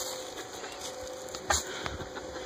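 Strutting tom turkey: a single short, sharp spit about a second and a half in, with a low drumming rumble under it.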